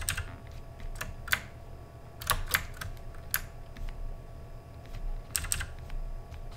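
Computer keyboard keys pressed in scattered sharp clicks, some in quick pairs, as shortcuts such as Ctrl+Z (undo) are entered.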